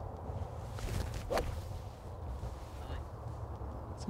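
Golf iron swung at a teed ball, striking it with a single sharp click about a second and a quarter in.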